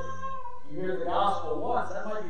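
A man's voice speaking in a sermon, with a drawn-out pitched vowel near the start, over a steady low hum.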